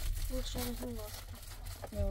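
A few short spoken sounds over a steady low rumble, the running noise of a passenger train compartment.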